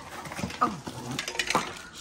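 Toddler's two brief rising squeals, about half a second and a second and a half in, over the rustle of wrapping paper being torn and light clatter.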